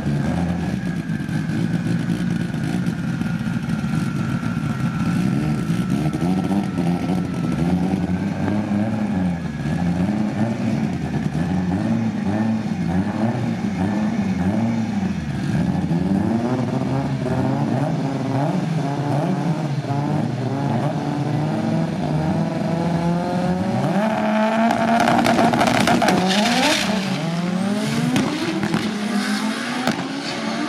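Two drag-racing cars' engines revving at the start line, the revs rising and falling over and over as they stage. About 24 seconds in they launch at full throttle, the engine notes climbing louder and higher as the cars pull away down the strip.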